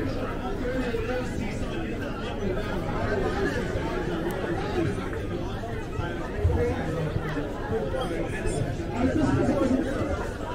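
Chatter of a crowd of passers-by: many voices talking over one another at a steady level.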